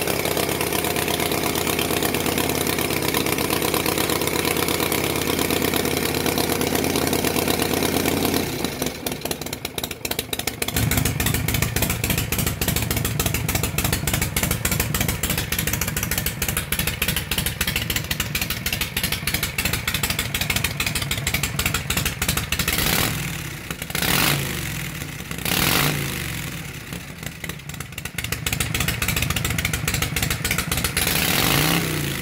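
1979 Harley-Davidson Shovelhead 80 cubic inch V-twin engine running just after a cold start on choke, exhausting through short slash-cut drag pipes. Its note changes and dips about nine seconds in, then settles into an idle with distinct firing beats, with two brief surges in engine sound about three quarters of the way through.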